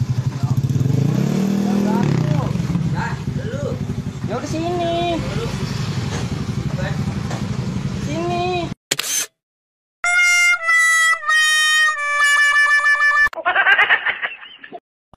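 Honda BeAT scooter engine running loud through its modified exhaust, revved up and back down about one to two seconds in, with voices over it. The engine sound cuts off abruptly near nine seconds, and after a short gap a few held music notes play, then a brief noisy sound effect.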